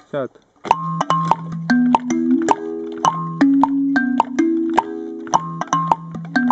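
Wooden board kalimba with metal tines, plucked by the thumbs in a 6/8 Afro-Cuban clave pattern: ringing notes that overlap and sustain, starting about half a second in. A foot-played woodblock clicks out the beat underneath.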